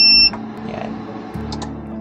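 A SMAT 2000-watt power inverter beeping once as it is switched on: a single short, loud, high beep at the start, followed by background music.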